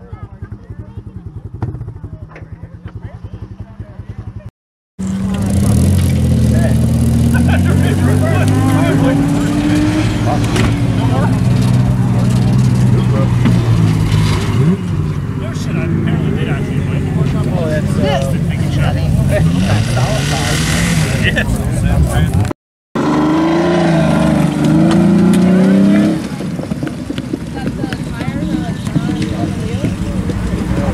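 Car engines revving up and down repeatedly with people's voices, in separate clips cut together; the first few seconds are much quieter, with only a faint low hum.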